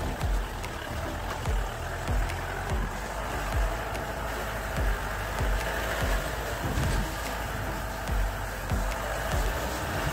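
Off-road jeep driving along a rough dirt track, its running noise broken by irregular low thumps from jolts and bumps, under background music.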